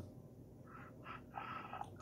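Low, quiet room tone with a faint breath from the speaker in the second half.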